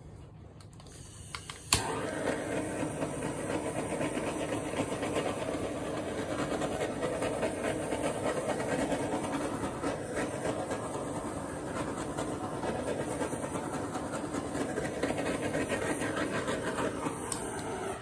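Handheld gas torch lit with a click about two seconds in, then its flame hissing steadily for about sixteen seconds as it is played over wet acrylic paint to bring the silicone up, cutting off just before the end.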